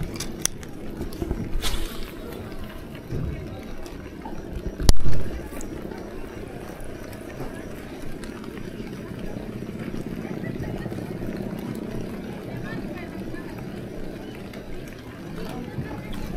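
Faint background voices over steady outdoor ambience, with a single sharp knock about five seconds in.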